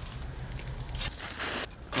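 Steel transplanting shovel being worked into garden soil under a daylily clump, cutting roots: soft crunching and scraping, the sharpest crunch about a second in.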